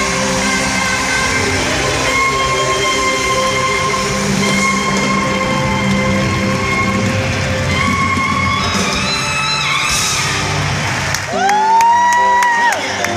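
Amplified live band music in a large arena, playing long sustained notes and chords. About eleven seconds in, a loud rising voice-like cry breaks in close by and holds.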